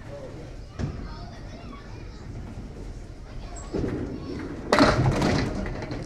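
A candlepin bowling ball knocks onto the lane, rolls with a low rumble, then strikes the candlepins: a loud clatter of falling pins near the end.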